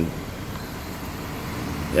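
Car engine idling steadily, heard from inside the cabin as a low, even rumble.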